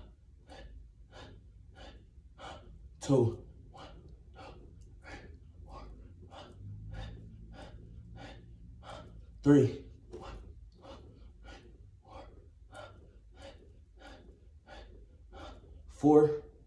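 A man breathing hard and fast through rapid push-ups, short sharp breaths at about two to three a second, with two louder voiced grunts, about three seconds in and again about nine and a half seconds in.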